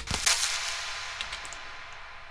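A crash-cymbal sample made from a recorded tissue-paper hit, drenched in reverb: one sudden hissing hit that fades away slowly in a long reverb tail.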